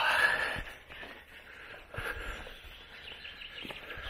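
Footsteps on a forest dirt path, with birds calling in the background.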